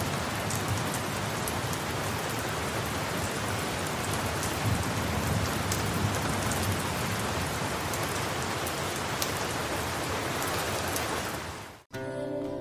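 Steady rain falling, an even hiss with scattered drop sounds, that fades out shortly before the end.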